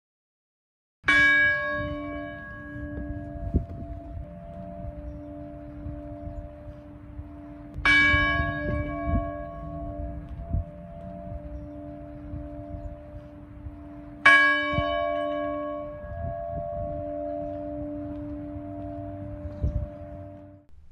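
A church bell tolling three times, about six and a half seconds apart. Each stroke rings on with a steady hum until the next.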